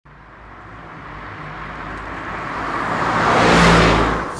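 A motor vehicle approaching, its rushing road and engine noise building steadily to a peak near the end.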